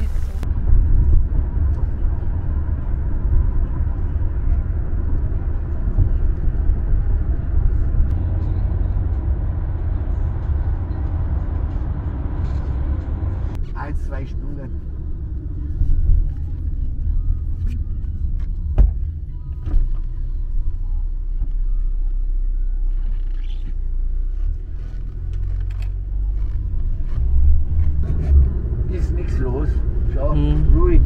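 Steady low rumble of a car driving, heard from inside the cabin. About halfway through, the higher hiss drops away abruptly and a few light clicks follow.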